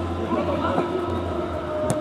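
Players' voices calling out on a small-sided football pitch, over a steady low hum, with a single sharp knock near the end.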